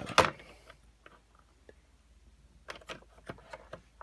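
Hard plastic parts of a Hasbro Galactic Heroes Ghost toy ship clicking and knocking as a detachable gun arm is handled and pressed into a slot: a couple of sharp clicks at the start, a quiet stretch, then a quick run of clicks about three seconds in.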